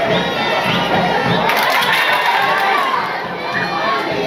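Stadium crowd at a football match, many voices shouting and cheering at once, swelling about a second and a half in as an attack builds toward goal.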